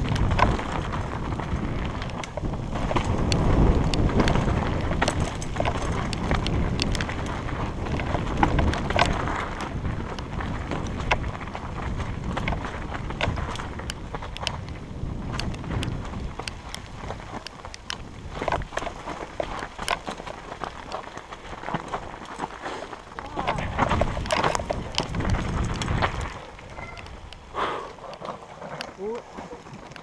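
Mountain bike descending a rough, rocky dirt singletrack at speed, heard from a helmet camera: a continuous rush of wind and tyre noise over loose rock and gravel, full of rattles and knocks from the bike. It eases off about four seconds before the end as the trail gives onto smooth road.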